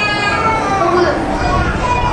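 Voices praying aloud at once, a man's voice through a microphone among them, with no clear words.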